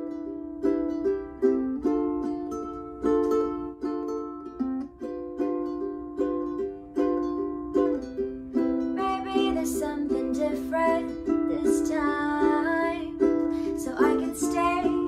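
Ukulele playing a steady rhythm of chords, with a woman's voice starting to sing over it about nine seconds in.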